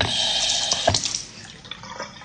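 Water running into a sink and splashing as it is rinsed over a face by hand; the rush is loud for about the first second, with a couple of splashes, then eases off.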